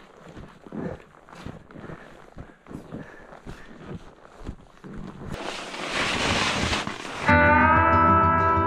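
Ski boots kicking steps into snow while climbing a steep couloir: soft, irregular crunches. About five seconds in, a louder rush of noise swells for two seconds. Near the end, music with sustained chord tones starts abruptly.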